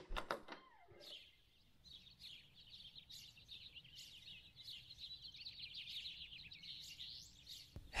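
A few quick knocks on a wooden door right at the start, then faint birds chirping and twittering continuously.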